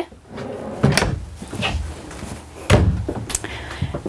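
Wooden wardrobe cabinet doors in a motorhome bedroom being opened and shut. There are two knocks, one about a second in and one near three seconds, with a few lighter clicks between them.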